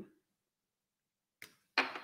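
Mostly near silence: room tone between a woman's words. The end of one phrase is heard at the very start, a short faint sound comes about a second and a half in, and she starts speaking again near the end.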